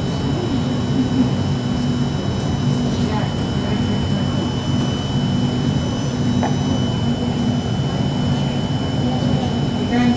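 Steady hum of a metro train standing at an underground station with its doors open: air-conditioning and equipment running, with a faint high steady whine throughout.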